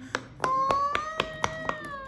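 Bubbles of a large silicone pop-it fidget toy being pressed and popped one after another by a finger: a quick run of small pops, about five a second. From about half a second in, a long held note sounds over the pops.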